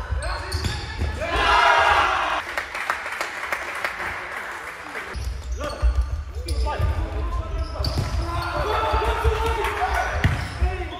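Futsal match sounds in a sports hall: the ball being kicked and bouncing on the hard court with many short knocks, and players shouting to each other, loudest about a second or two in.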